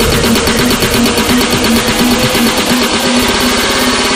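Electronic dance music: a synth sound stuttering at a fast even rate, over a low note that pulses about three times a second.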